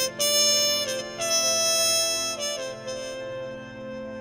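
Trumpet playing a slow melody of a few held notes: a short phrase at the start, then a higher note held for over a second, a brief note, and a softer tail. A steady held backing tone sounds underneath.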